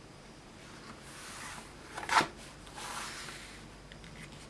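Paper catalogue being handled and shifted: soft paper rustling, with one sharp, crisp crackle of paper a little past halfway through.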